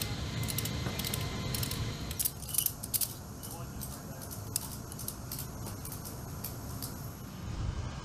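Metal ratchet buckles on cargo restraint straps clicking and rattling as they are worked and tightened: many short, irregular clicks over a steady low hum.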